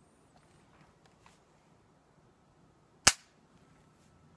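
A single shot from a Chiappa M1-9 9mm carbine about three seconds in: one sharp crack with a short ringing tail.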